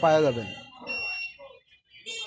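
A man's voice calls out a word at the start, its pitch falling. A faint, thin, steady high tone, like an electronic beep, sounds briefly about a second in.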